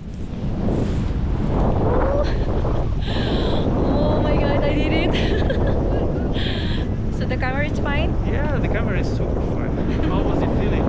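Wind rushing over the camera microphone, rising within the first second as the tandem paraglider leaves the slope and then holding steady and loud in flight. Brief wavering high-pitched sounds come a few times over the wind, about four seconds in and again near the eight-second mark.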